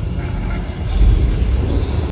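Deep, loud rumble with a noisy hiss over it, swelling about a second in: a theme-park tour tram moving through a screen-based dinosaur show, its booming soundtrack and the tram's own running mixed together.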